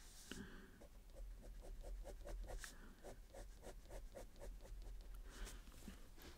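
Fine-liner pen nib scratching quick, short hatching strokes across sketchbook paper. It is a faint, rapid run of strokes, several a second, with a brief pause in the middle.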